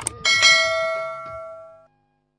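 A song's music ends with one struck bell-like chime about a quarter second in, ringing with several steady tones that fade and cut off suddenly near the end.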